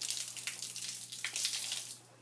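Water splashing and pouring for about two seconds, starting suddenly and stopping near the end, as from a wet papermaking sponge being wrung out.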